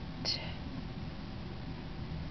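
Quiet room tone, a low steady hiss, with one short breathy sound about a quarter second in.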